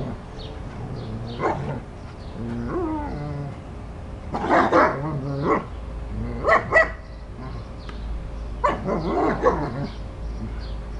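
Dogs barking and yipping in short bursts, with a short falling call about three seconds in. The loudest bursts come around the middle and near the end.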